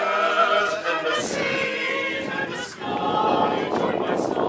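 Mixed choir of men's and women's voices singing together, unaccompanied.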